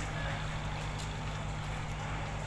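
A boat's engine running steadily, a low drone.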